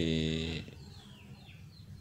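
A man's voice drawing out one syllable ('di...') at a steady pitch for about half a second, then a pause with only faint background noise.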